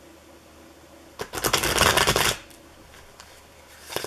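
A deck of tarot cards being riffle-shuffled by hand: a dense, rapid rattle of cards flicking together for about a second, starting about a second in. A second shuffle begins near the end.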